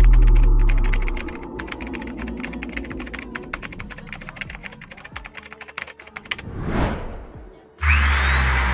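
Keyboard-typing sound effect, a fast run of sharp clicks lasting about six seconds, following a deep bass hit that dies away in the first second. A whoosh swells and fades near the end.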